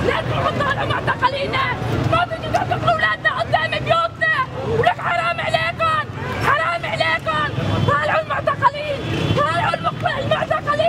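Protest crowd: many voices shouting and talking over one another, with a steady babble underneath.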